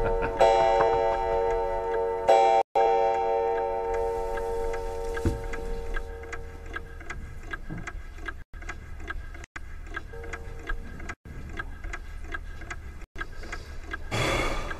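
Tense background score: a held chord that fades away over the first six seconds, over a steady clock-like ticking that runs on after it.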